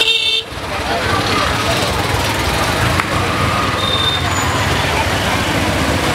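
Roadside traffic noise: a steady rumble of passing motor vehicles, including three-wheeler auto-rickshaws and motorcycles, under the chatter of a crowd. A short horn toot sounds right at the start.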